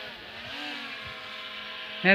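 Quadcopter drone hovering: a steady buzzing hum of its rotors, the pitch wavering slightly early on and then holding.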